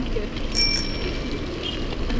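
A bicycle bell on one of the passing mountain bikes rings once about half a second in, its bright tone fading away over about a second.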